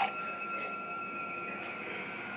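A steady high-pitched tone, two pure pitches held together without change, over faint background hiss.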